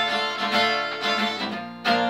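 Acoustic guitar being strummed, chords ringing on between strokes, with a fresh, louder strum near the end.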